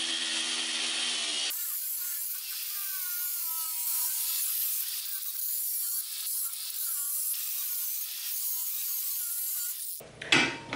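Angle grinder with a metal cut-off wheel cutting a lengthwise slot in a metal pipe. It starts as a steady motor whine under a grinding hiss. About a second and a half in, it changes abruptly to a brighter, hissier cutting noise with wavering squeals.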